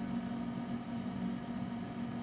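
Steady low electrical hum with a faint fan hiss from an idling video slot machine cabinet; no game sounds.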